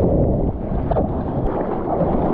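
Seawater sloshing and splashing close to the microphone as arms stroke through the water paddling a bodyboard, with wind buffeting the microphone.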